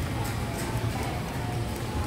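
Steady low hum of busy food-centre background noise with faint distant voices.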